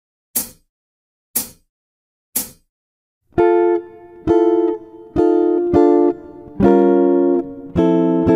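Three evenly spaced count-in clicks about a second apart, then a jazz guitar playing a slow chord-melody phrase: sustained F, F major 7, quick F7 and F6, then G minor 7 flat 5 and F major 7 ringing, the lower notes of the chords stepping downward.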